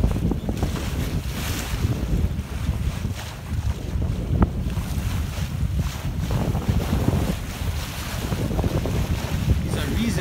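Wind buffeting a phone microphone on a sailboat under way, with choppy water washing along the hull beneath it. The noise is steady and rough, with a low rumble that rises and falls.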